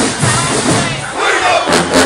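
Marching band brass and drums playing loudly, with a regular drum beat about twice a second, under a crowd shouting and cheering.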